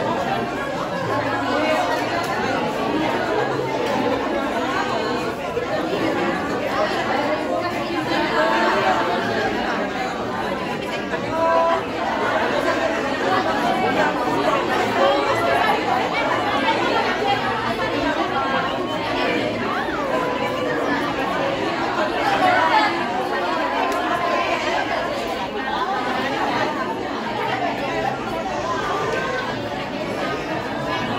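Crowd chatter: many people talking at once in a steady babble of overlapping voices.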